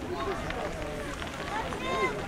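People talking nearby outdoors, their words indistinct.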